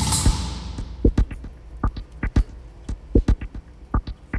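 Irregular series of short clicks and knocks, a few a second and often in quick pairs, from the valves and syringe pumps of an automated chemistry rig as it switches and draws liquid.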